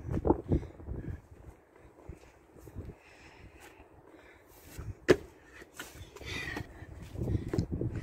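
Scuffs and footfalls of trainers on a brick wall and paving, with one sharp knock about five seconds in and low rumbling near the start and end.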